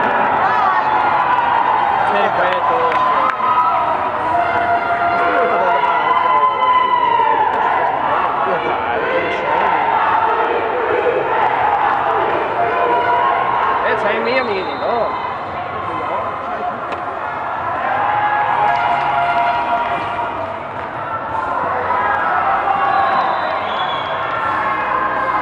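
Many children's voices shouting and calling at once across an open football pitch during youth matches, with a few sharp knocks.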